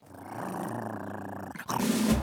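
Cartoon dog growling: one low, rough growl lasting about a second and a half.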